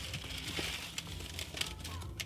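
Small folded paper slips rustling and crinkling with light irregular clicks as they are shuffled by hand on a desk and one is picked out, over a steady low hum.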